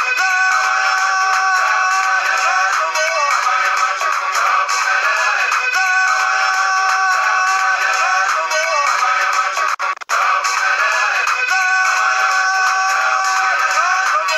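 A TV soap opera's opening theme song: music with singing, thin and without bass. The sound cuts out briefly about ten seconds in.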